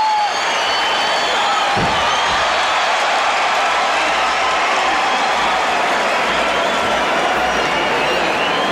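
A large arena crowd cheering and applauding steadily as a fight ends in a submission, with a few high whistles near the start.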